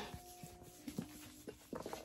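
Faint background music with held notes, under a few soft knocks from a thick hardcover textbook being handled and turned.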